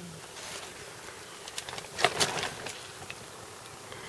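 Soft rustling and scraping of fingers working through loose garden soil, with a few short sharp scrapes, the loudest about two seconds in, over a faint steady hiss.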